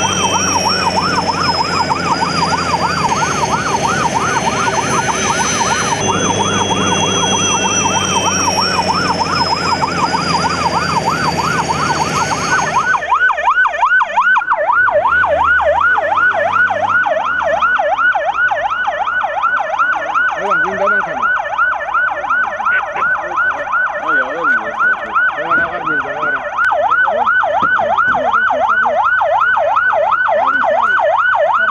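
Ambulance siren on a fast wail, rising and falling several times a second. Through the first half, a high whine slowly falling in pitch and a low rumble from a helicopter's turbine and rotor sit under the siren, then cut off suddenly about thirteen seconds in.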